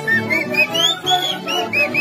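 Andean folk band playing live: strummed guitars and accordion under a high, fast melody of short notes that arch up and down.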